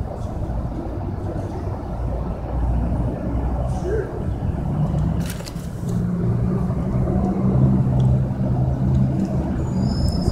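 Low rumble of a running vehicle engine, with a steady low hum from about halfway through, and indistinct voices underneath.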